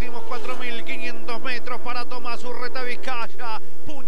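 A man's fast Spanish-language race commentary, over a steady drone of racing car engines.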